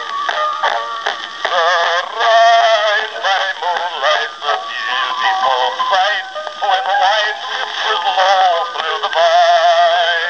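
A 1904 Columbia Type Q Graphophone playing back a two-minute black wax cylinder through its horn: an early acoustic recording of a baritone song. The sound is thin, with no bass.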